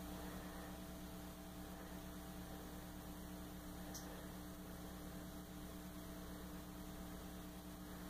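Low, steady mains hum with faint hiss from an idling Gorilla GG110 solid-state guitar amplifier, with no notes played. There is one faint tick about four seconds in.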